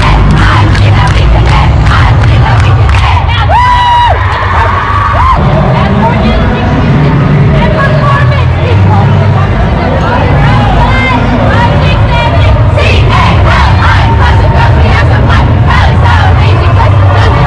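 A cheerleading squad shouting and cheering together in a packed, echoing warm-up hall, many voices at once, with one long high-pitched cry held from about three and a half to five seconds in. Loud music with heavy bass runs underneath.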